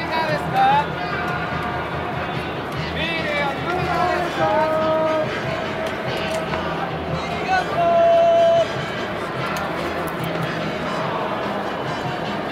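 Ballpark crowd noise in a domed stadium: many voices at once, mixed with music and held pitched tones, with a few short gliding squeals early and about three seconds in.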